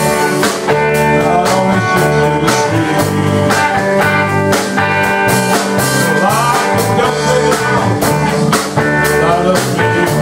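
Live band playing a song on electric guitars, bass, keyboard and drum kit, with a steady drum beat and bending guitar notes about six seconds in.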